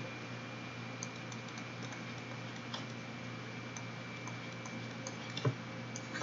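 Faint scattered taps and clicks of a stylus writing on a tablet screen, over a steady low hum. One louder tap comes near the end.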